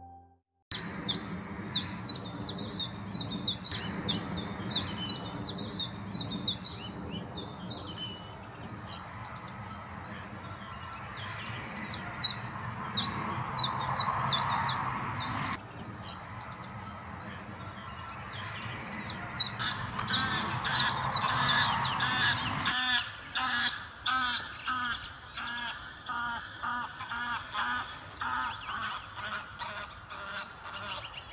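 A chiffchaff singing its repeated two-note song in bursts of quick, high notes. About two-thirds of the way through, this gives way to greylag geese honking in a steady run of calls.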